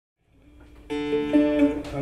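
Acoustic guitar notes ringing out as the sound fades in from silence. A chord sounds suddenly about a second in and is held, with a couple more notes picked over it.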